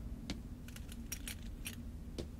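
Metal armour and mail clinking and jingling as a man wearing it walks, a string of light, irregular high clinks.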